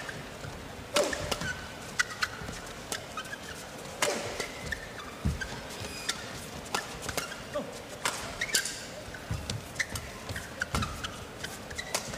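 Badminton rally: sharp racket strikes on the shuttlecock at irregular intervals, mixed with short squeaks of court shoes on the hall floor.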